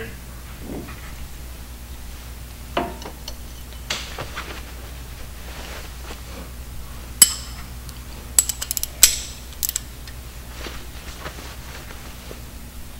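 Scattered metallic clinks and clicks of hand tools on the stock Jeep JK brake caliper as the brake line's banjo bolt is undone, over a steady low hum. A sharp clink comes about seven seconds in, then a quick run of ringing clinks a second or two later.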